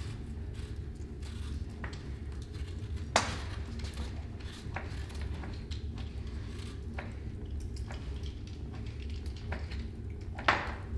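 Quiet kitchen work: a green apple being peeled with a hand peeler, with scattered small clicks and knocks of knives on plastic cutting boards and one sharper knock about three seconds in, over a steady low room hum.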